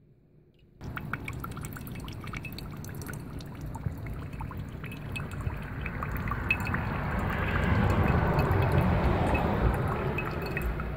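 Filtered water trickling and dripping from a gravity-fed filter straw into a glass bowl, starting about a second in, with small clicks throughout. It grows louder toward the end.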